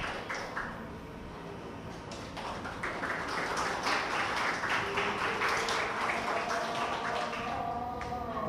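Audience applause: many irregular hand claps, thinning out about half a second in and building up again after about two seconds.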